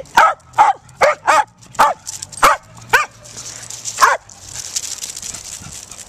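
A small dog barking in play: about eight sharp, high barks, roughly two a second, which stop about four seconds in.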